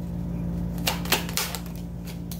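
Tarot cards handled and dealt onto a table: a few quick clicks and snaps of card edges about a second in, over a steady low hum.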